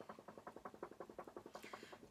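Faint, rapid clicking and tapping as pound coins and plastic binder pockets are handled on a desk.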